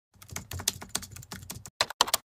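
Computer-keyboard typing sound effect timed to title text appearing on screen: a quick run of keystroke clicks, with a short pause and a last few keystrokes near the end.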